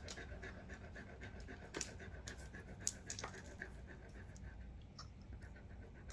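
A dog panting softly and steadily, with a few small clicks from the flush syringe and supplies being handled.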